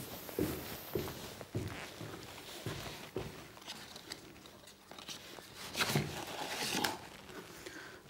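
Footsteps at about two a second as a person walks up to a table, then rustling and handling noises as things are set down on it, loudest around six to seven seconds in.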